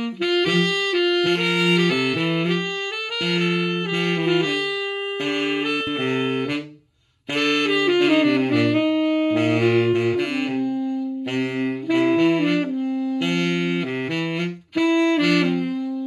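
Saxophone duet, a tenor saxophone with a second saxophone, playing a melody in two parts. The music breaks off briefly about seven seconds in and again near the end.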